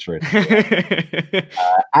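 Several men laughing together over a video call, with a little talk mixed in; part of it sounds thin, cut off above the middle range like a call line.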